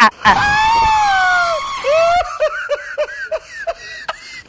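A person's long, high-pitched cry that slowly falls in pitch, followed by rapid high-pitched cackling laughter, about five bursts a second.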